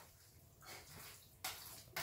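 Faint wet squelching of a spoon stirring raw minced meat and tripe in a plastic bowl, with a soft knock about one and a half seconds in.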